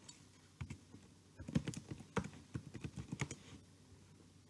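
Computer keyboard being typed on: a quick, uneven run of key clicks starting about half a second in and stopping shortly before the end.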